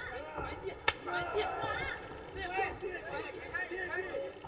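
Voices talking and calling out over the fight, with one sharp smack about a second in, the sound of a strike landing in a kickboxing bout.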